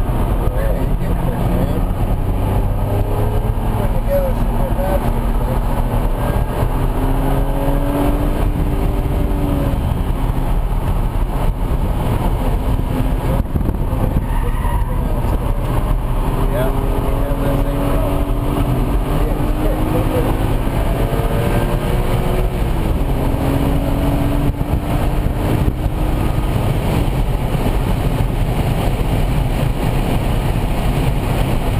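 BMW Z4 M Coupe's 3.2-litre straight-six heard from inside the cabin under hard driving on track. The engine note climbs in pitch again and again and drops back between climbs, over steady road and wind noise.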